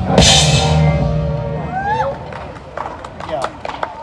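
A live rock band ends a song on a final drum-and-cymbal hit that rings out and dies away. About two seconds in a voice calls out, followed by a few scattered claps before the sound cuts off.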